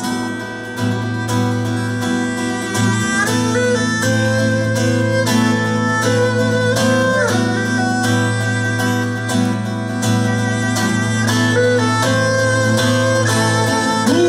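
Instrumental break of an acoustic folk-rock song: a violin plays a held, sliding melody over steadily strummed acoustic guitars.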